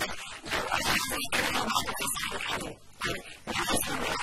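Only speech: a woman talking in Arabic.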